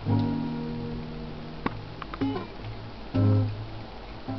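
Acoustic guitar chord strummed and left to ring and fade, with a few light plucks, then a second strum about three seconds in.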